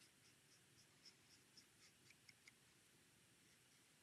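Very faint, quick strokes of a brush-tip alcohol marker on card stock, colouring along the edge of a stamped paper butterfly, about four strokes a second; they stop about two and a half seconds in.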